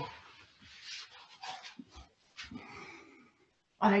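A woman breathing audibly in several short, breathy exhalations as she comes up to sitting from a rolling exercise, with light rustling of clothing on the mat and a soft low thump about two seconds in.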